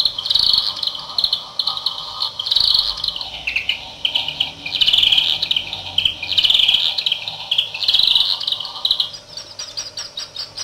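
Electronic bird-call samples from a circuit-bent bird song calendar sound strip, retriggered over and over by a 555 oscillator so the chirps repeat in stuttering bursts about once a second. The pitch drops about three seconds in and slowly rises again near the end.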